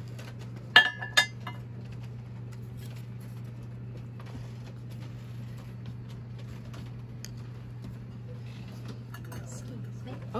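Porcelain figurine clinking twice against a ruffled milk-glass bowl as it is set down, two short ringing chinks close together, over a steady low hum.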